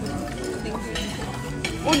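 Restaurant dining-room background: cutlery and dishes clinking against a steady murmur of other diners' voices, with a few short clicks about a second in.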